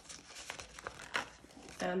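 Rustling and crinkling as polymer banknotes are handled and slipped into a plastic binder envelope, with small clicks among the rustle.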